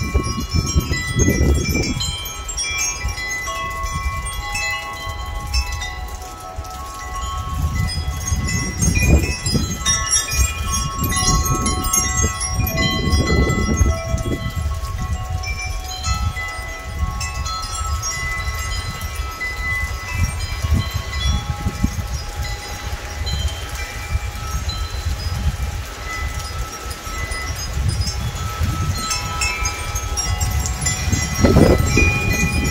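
Metal wind chimes ringing continually, many overlapping steady tones struck again and again by the wind. Gusts of low rumble from wind buffeting the microphone come and go, strongest around the middle.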